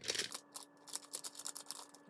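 Foil blind-bag packet crinkling and rustling in the hands as it is opened: a quick run of small crackles, densest at the start.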